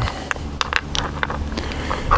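Several light metallic clicks and taps as a spent CO2 capsule is picked up and handled on a stone ledge.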